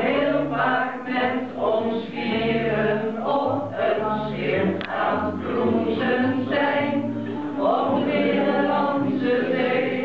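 A small group of men and women singing a song together in Dutch.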